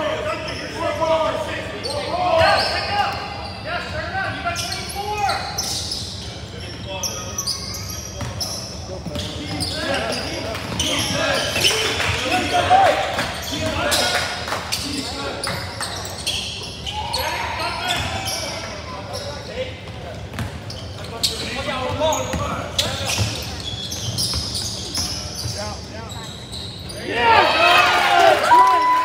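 Basketball bouncing on a hardwood gym floor during live play, with scattered shouts and calls from players and spectators echoing in the gym.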